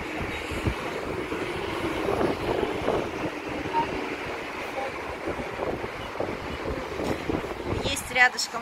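Wind blowing on the microphone over a steady noise of road traffic and breaking surf below.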